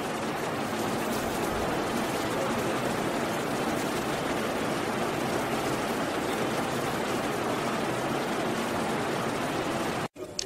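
A steady, even rushing noise with no pitch or rhythm, cutting in and out abruptly at the start and end.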